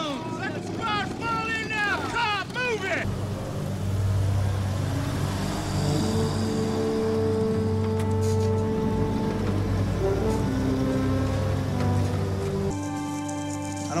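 Army truck engines running in a steady low drone, with a music score playing over them; near the end the engine drone drops away and the music fills out.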